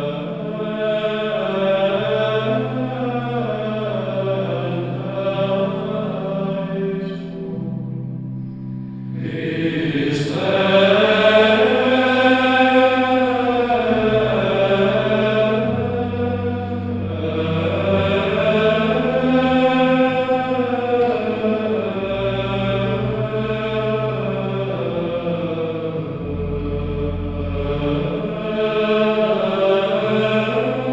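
Slow sacred vocal chant: voices sing long, slowly rising and falling phrases over held low notes. There is a short break about eight seconds in, then the singing comes back a little louder.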